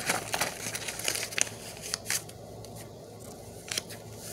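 Sketchbook paper pages rustling and crinkling as they are handled and turned, in a string of irregular scratchy rustles.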